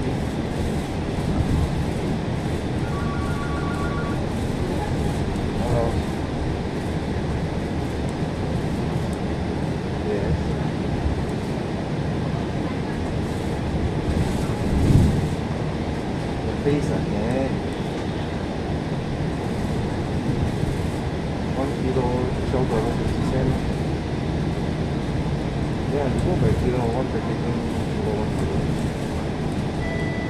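Steady low rumble of engine and road noise heard from inside a moving city bus, with a louder bump about fifteen seconds in. A brief electronic two-note beep sounds about three seconds in, and voices murmur faintly underneath.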